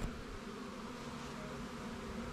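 Honeybees flying around the entrance of a Flow Hive, a steady buzzing hum from a busy colony.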